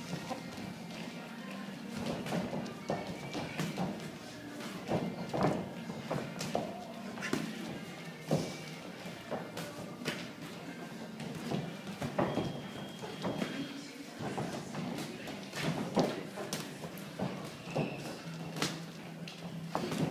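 Boxing sparring: irregular thuds and slaps of padded gloves landing on gloves and headgear, mixed with shuffling footwork on the ring canvas. Music plays underneath.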